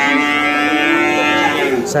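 A sheep bleating: one long call, ending near the end.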